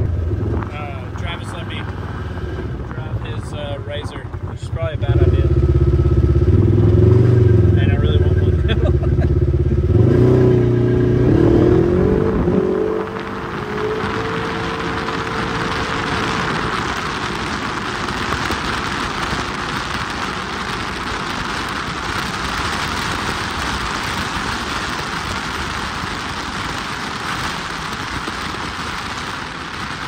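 Side-by-side UTV driving on a paved road: its engine runs loud and revs for the first dozen seconds, then gives way to a steady rush of wind and road noise at speed.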